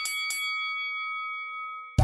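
A bell-like chime sound effect: a few quick strikes, then a chord of ringing tones that fades out over about a second and a half.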